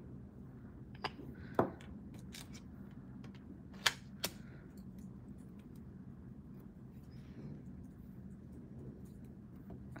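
Nail-stamping tools and a polish bottle handled on a desk: a few sharp clicks and taps, the loudest about four seconds in, over a faint steady room hum.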